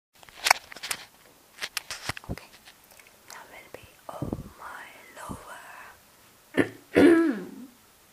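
A few sharp clicks in the first two seconds, then breathy, whispery vocal noises and a short voiced sound falling in pitch near the end: a singer's sounds before the song begins.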